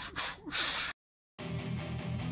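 A few short, breathy hissing bursts, like sharp gasps, that cut off abruptly about a second in. After a moment of silence a music track starts with a steady held chord.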